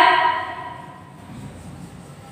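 A woman's voice trails off over the first half second, then comes a pause holding only faint low background noise.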